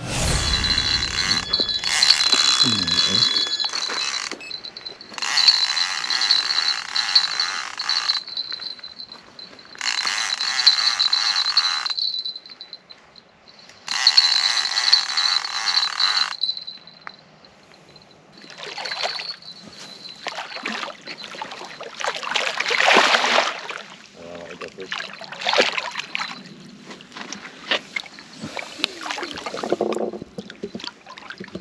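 Electronic carp/catfish bite alarm sounding in four bursts of a few seconds each, each with a steady high tone, as a catfish takes line on the rod. After that come irregular knocks and rustles as the fish is fought in.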